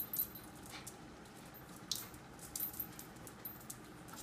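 Dogs' claws clicking and skittering irregularly on a tile floor as they scramble and turn.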